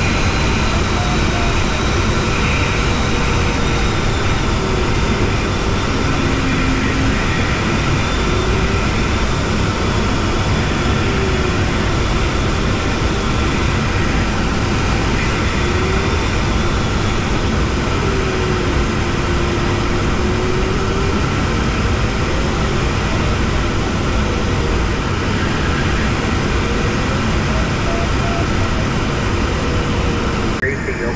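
Steady airflow rushing over the fiberglass canopy of a Jantar Std. 2 sailplane in gliding flight, with the variometer's audio tone sliding up and down in pitch as the glider's vertical speed changes.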